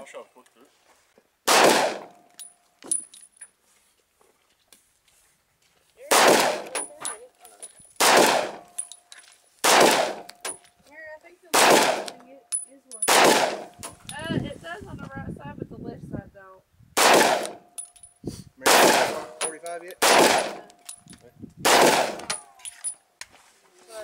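Pistol shots fired one at a time, ten in all: one, a pause of about four seconds, then a slow, even string of about one shot every two seconds. Each shot is loud and sharp with a short ringing tail, and faint high pings follow several of them.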